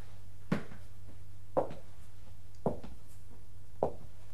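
A slow, even series of short knocks or clicks, about one a second, four in all, over a steady low hum.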